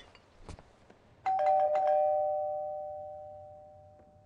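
Two-tone doorbell chime: a ding-dong, higher note then lower, that rings on and fades away over about three seconds. A faint click comes just before it.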